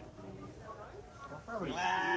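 A sheep bleating once, loudly, starting near the end and held for about a second, over a low murmur of background voices.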